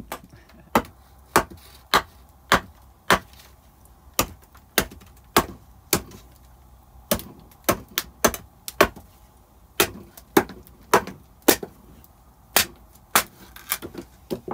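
Hatchet chopping a length of wooden plank into pieces on a wooden floor: about twenty sharp knocks, one or two a second, with a few short pauses between runs of strokes.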